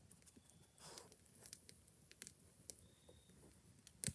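Near silence, with faint scattered crackles and pops from a wood campfire burning in a fire ring.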